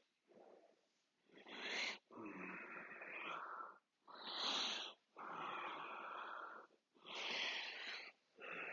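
Slow, audible human breathing during tàijíquán practice: about five long breaths in and out, each a second or more, with short pauses between.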